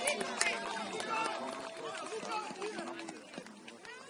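Several spectators' voices calling out and chattering over one another, with a few sharp claps near the start and a steady held tone through the first half.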